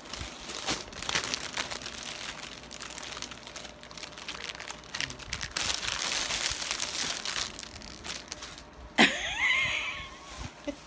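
Clear plastic wrapping crinkling and crackling as it is handled and pulled off a small cardboard crayon box, busiest a little past the middle. About nine seconds in comes a sudden sharp sound with a squeaky, wavering pitch, the loudest moment.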